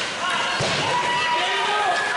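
Youth ice hockey game in an echoing rink: several voices calling and shouting at once, with a sharp knock about half a second in, such as a puck or stick hitting the ice or boards.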